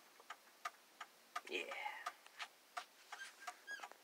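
Faint, even ticking, about three ticks a second, with a brief faint voice-like sound about a second and a half in.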